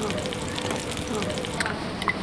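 Gyoza frying in a pan with a steady crackling sizzle.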